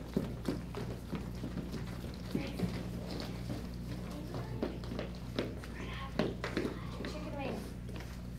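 Children's footsteps tapping and patting on a hardwood dance floor, with indistinct children's voices and chatter, over a steady low hum.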